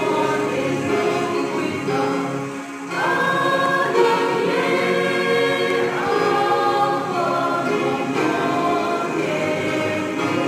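Mixed choir singing in parts with electronic keyboard accompaniment, holding sustained chords that change about every three seconds, with a brief drop in loudness just before the first change.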